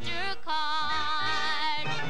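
A girl singing a song with vibrato over instrumental accompaniment, a short phrase and then a long held note that ends near the close.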